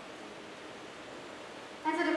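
Steady, even hiss of room tone in a pause between spoken phrases; a woman's voice starts again just at the end.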